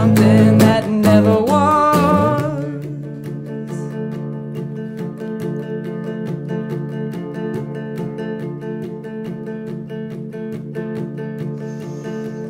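Electric guitar strummed in steady rhythmic chords through a Fender amp. For the first two and a half seconds a held, wordless sung note with vibrato rides over it, then the guitar plays on alone.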